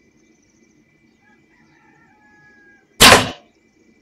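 A single loud, sudden smack of a bow shot about three seconds in, the arrow striking a vervet monkey; it lasts about a third of a second.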